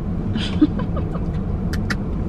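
Steady low hum of a parked car's engine idling, heard from inside the cabin, with a short soft laugh about half a second in and two sharp clicks near the end.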